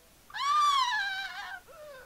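A woman's high-pitched squeal, rising a little and then falling over about a second, followed by a short, softer cry near the end.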